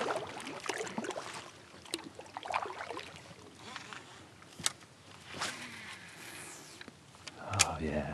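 Kayak moving slowly through calm water: a faint wash of water along the hull with a few sharp, light knocks.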